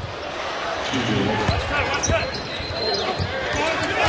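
Basketball arena crowd murmuring during live play, with a few thuds of the ball bouncing on the hardwood court and indistinct voices.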